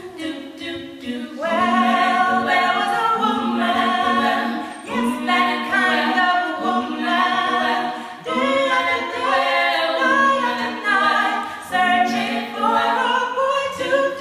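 Three women singing an unaccompanied gospel song in close harmony, phrase after phrase with short breaks between.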